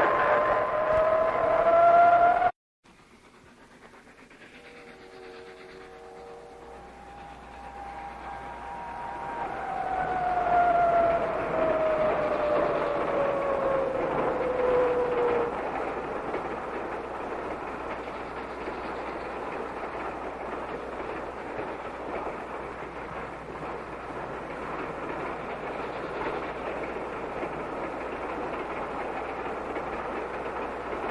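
A train approaching and passing, its multi-tone whistle sounding and then sliding down in pitch as it goes by. This is followed by the steady running noise of the train. Before this, a dramatic music cue plays and cuts off abruptly about two and a half seconds in.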